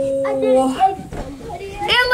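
Children's voices at play: a long held vocal sound that stops about three-quarters of a second in, then a high-pitched cry near the end.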